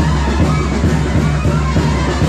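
Live Mexican banda (brass band) music with a deep bass line moving in a steady rhythm.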